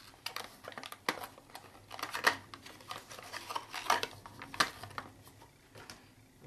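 Handling of a small paperboard box as it is opened and a ceramic ocarina slid out of it: scattered rustles, light clicks and taps at irregular intervals.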